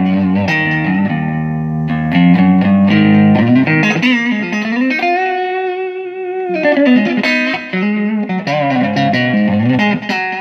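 Telecaster-style electric guitar fitted with a Musiclily ashtray bridge and brass Gotoh In-Tune saddles, played clean on the neck pickup through a little delay and reverb: a run of single notes and chords, with one long held note shaken with vibrato a little past the middle.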